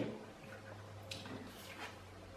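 Faint rustle of a tarot card being picked up off the table and handled, heard twice, over a low steady hum.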